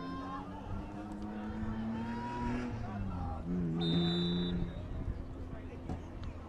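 Spectators talking in the stands, with a short high whistle blast about four seconds in, a referee's whistle ahead of the kickoff.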